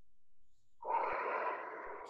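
A person's long breath out close to the microphone, starting a little under a second in and lasting about a second and a half.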